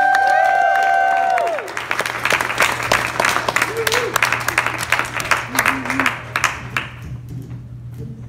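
Small comedy-club audience applauding a comic onto the stage: whoops and cheers at first, then clapping that thins out near the end.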